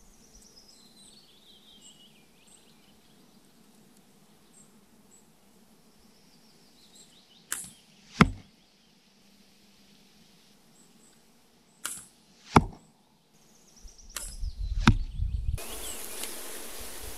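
Longbow shots: three times the bow is loosed, each shot heard as a pair of sharp knocks less than a second apart, about halfway through, about three-quarters of the way through and near the end. A low rumble joins the last shot.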